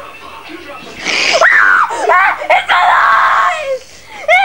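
A child screaming and shrieking in play, loud and high-pitched, starting about a second in and breaking off just before the end.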